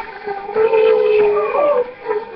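A girl singing a long held note, bending in pitch about three quarters of the way through.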